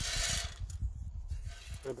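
Hardwood pellets poured from a bag into the metal hopper of a wood-pellet pizza oven: a brief rushing hiss, then scattered clicks and rattles as the pellets settle.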